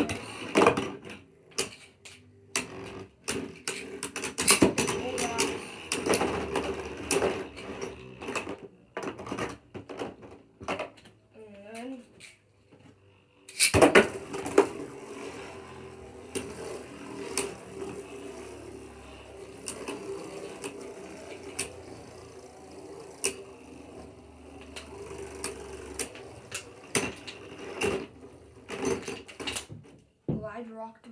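Beyblade Burst spinning tops launched into a plastic stadium with a sharp snap at the start and again about 14 seconds in. Each launch is followed by a steady whirring hum of the spinning tops and rapid clicks as they collide with each other and scrape the walls of the bowl.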